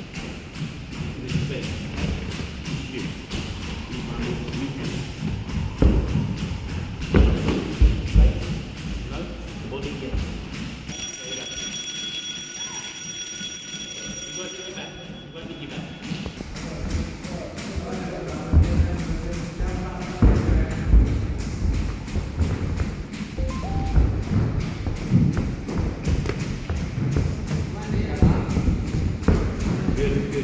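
Gloved punches thudding on focus mitts. About eleven seconds in, a boxing-gym round timer sounds a steady electronic tone at several pitches for about four seconds, signalling the end of the round.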